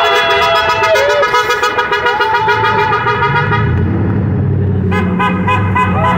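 Horns sounding in long, overlapping blasts at several pitches at once, new blasts starting about two seconds in and again near the end, with passing traffic and a low rumble joining about halfway through.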